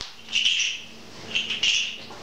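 A bird chirping: short, high calls in little clusters about once a second, over a faint steady hum.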